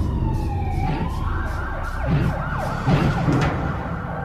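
A siren wailing, its pitch sliding down and then rising again and holding, over a steady low rumble.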